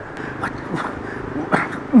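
A man's low groans of pain, two short moans falling in pitch near the end, from a wounded man lying on his back.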